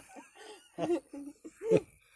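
People laughing in short bursts, the loudest near the end.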